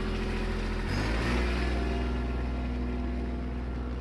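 Compact tractor engine running steadily, then revving up about a second in as the throttle is opened and holding at the higher speed. The higher engine speed gives the spreader's hydraulics more flow.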